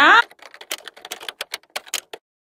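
Typewriter sound effect for an intro title card: a rapid, irregular run of sharp key clicks, stopping near the end.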